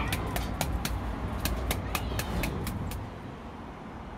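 A quick run of sharp taps or clicks, about three or four a second, over a low rumble. The taps stop about two and a half seconds in, leaving only the quieter rumble.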